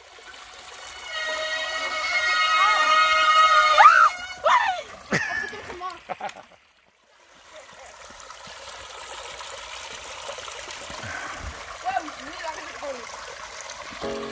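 Small stream running and trickling under a plank footbridge, a steady rush of water. In the first half a loud, high held tone lasts about three seconds and ends in short gliding sweeps up and down.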